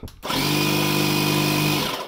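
The built-in 12V electric air pump (tyre inflator compressor) of an electric hydraulic jack unit switched on briefly: a steady motor hum and hiss for about a second and a half, then cut off, its pitch sagging as it spins down.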